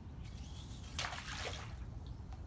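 Water splashing at the pool surface as a large paddle-tail swimbait is reeled in, with one louder splash about a second in, over a low steady rumble.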